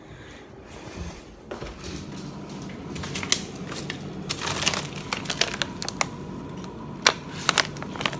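Plastic bags of frozen food rustling and crinkling as a freezer is rummaged through, with sharp crackles from about three seconds in.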